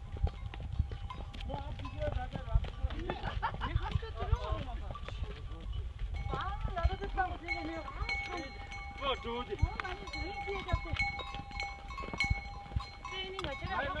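Pack horses walking up a dirt mountain trail with scattered hoof knocks, over wind and handling rumble on a phone camera carried in the saddle. Voices are heard faintly throughout.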